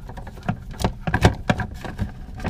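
Irregular clicks and light knocks of a screw being backed out of a plastic paper towel holder mounted under a wooden cabinet, with the holder handled by hand.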